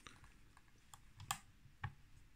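A few faint metallic clicks, the loudest a little past the middle, as a nickel Elmar 50 mm f/3.5 collapsible lens is twisted out of its lock and pushed back into a Leica II body.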